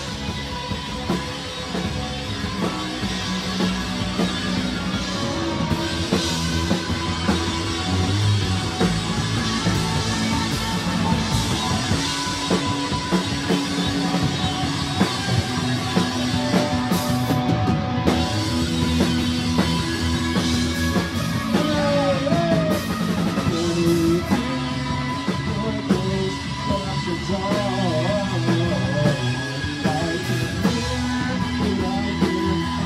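Live rock band playing, with drum kit, electric guitar and bass guitar, loud and continuous.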